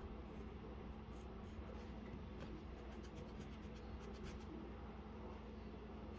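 Wooden graphite pencil scratching on drawing paper in short quick strokes, coming in bursts, over a faint steady low hum.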